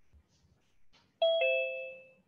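A two-note chime, a higher tone and then a lower one in a ding-dong pattern, about a second in, ringing on and fading away.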